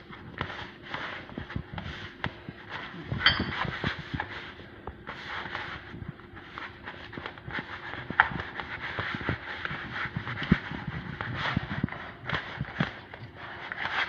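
A hand kneading soft, sticky yeast dough in a plastic bowl: an irregular run of soft slaps and scrapes against the bowl, a few each second.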